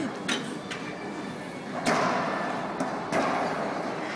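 Racquetball rally: several sharp smacks of the ball off racquets and court walls, ringing in the enclosed court, the loudest about two seconds in.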